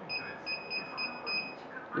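Touchscreen key-press beeps from a Multilaser Style car multimedia head unit: a quick run of short, high beeps, about four a second. Each beep confirms a tap on an on-screen arrow that steps the colour setting down.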